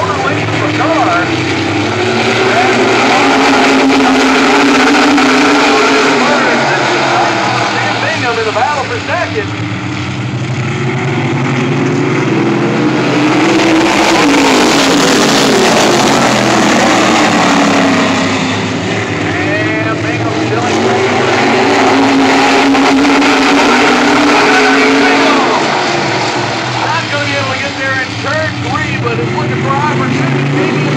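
A field of modified race cars' engines racing around an oval track. The sound swells and fades as the pack comes past and goes round the turns, with the engine pitch rising and falling, and it is loudest about halfway through as the cars pass close by.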